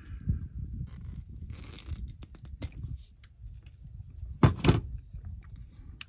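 Small clicks, rustles and scrapes of automotive wires being handled and their insulation worked with diagonal cutters.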